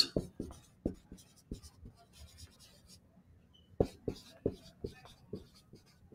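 Dry-erase marker writing on a whiteboard: a run of short marker strokes, a quiet pause of about a second midway, then another quick run of strokes.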